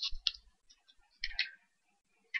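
Stylus tapping on a pen tablet: a few faint clicks with light thumps, two in the first quarter second and another short cluster a little after a second in.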